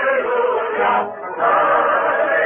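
A choir singing sustained chords, heard through the narrow, muffled sound of an old radio broadcast recording. The singing dips briefly about a second in and then swells again.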